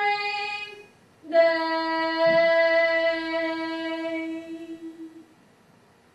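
A woman singing unaccompanied in long held notes: a short note ending about a second in, then a lower note held for about four seconds.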